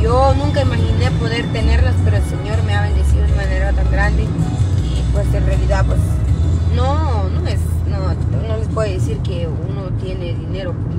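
A woman singing a slow song inside a car cabin, in long held notes that slide up and down, with a low rumble underneath.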